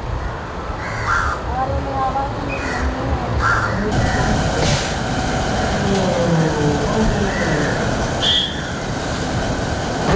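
Indistinct chatter of several voices over steady background noise in a busy building, broken by a few short, sharp calls.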